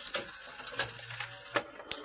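Pioneer PD-F908 101-disc CD changer's carousel mechanism running as the disc carousel turns toward the door: a steady high motor whine with gear clatter and light clicks. It stops about a second and a half in, followed by two sharp clicks.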